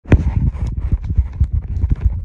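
A rapid, irregular run of short knocks and rubbing, heavy in the bass: handling noise on a handheld phone's microphone.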